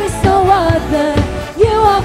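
Live worship band playing: several vocalists singing a melody together over electric guitars, bass guitar and a drum kit keeping a steady beat.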